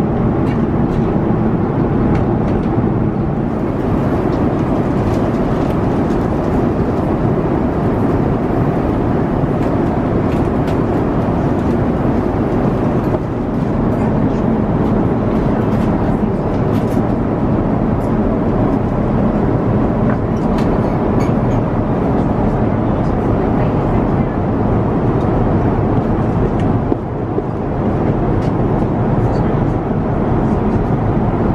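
Steady rushing cabin noise of an Airbus A350-900 airliner in cruise, heard from inside the cabin, with a few faint light clicks over it.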